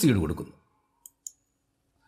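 Computer mouse button clicking, two short sharp clicks about a second in, a quarter second apart.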